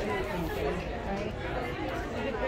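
Background chatter of several people talking at once, a steady indistinct babble with no single voice standing out.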